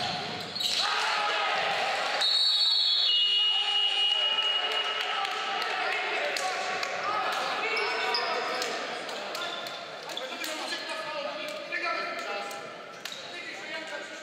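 Live basketball game in a large, echoing gym: a ball bouncing on the hardwood, players and coaches shouting, and short high squeaks from sneakers on the court.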